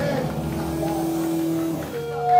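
Live band playing loud and distorted, a thick wall of amplified noise with one steady pitched note held through most of it, breaking off near the end.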